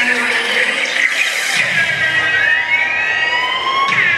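Opening of a cheerleading routine's music mix: electronic tones with a siren-like sweep rising over the second half, ending in a sharp hit just before the end.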